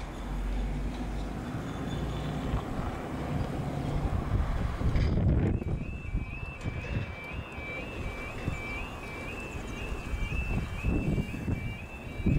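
Level crossing audible warning alarm starting about five and a half seconds in, a repeating warbling yelp that keeps going as the amber and then red road signals come on: the crossing is closing for an approaching train. Wind noise rumbles on the microphone throughout.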